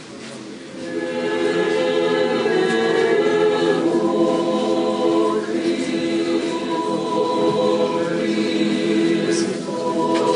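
Orthodox church choir singing unaccompanied, several voices in held chords that come in about a second in and move to new chords every few seconds.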